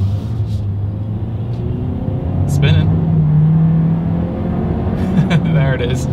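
A 2021 Hyundai Sonata's 1.6-litre turbocharged four-cylinder engine under hard acceleration up a slight incline, heard from inside the cabin. Its note climbs to a higher, stronger drone about two and a half seconds in.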